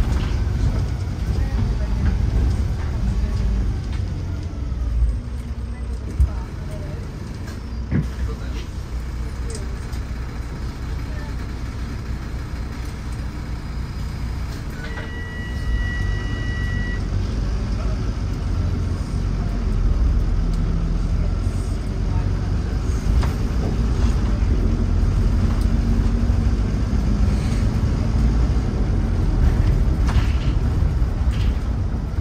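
Cabin sound of a Wright Eclipse 2 single-deck bus under way: a low engine and road rumble that eases off for a while, then builds again after about halfway, with a few knocks and rattles. About halfway there is a steady electronic tone, two pitches held together for about two seconds.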